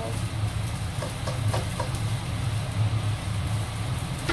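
Steady low mechanical hum, with a few light taps of a spatula against a wok as fried rice is stirred.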